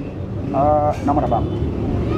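Talking voices, one brief high-pitched phrase about half a second in, over a steady low rumble in the background.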